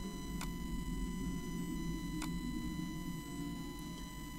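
Two faint computer-mouse clicks about two seconds apart over a low, steady hum.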